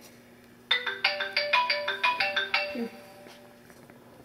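Mobile phone ringtone: a quick melody of short chiming notes, about five or six a second. It starts under a second in and stops after about two seconds.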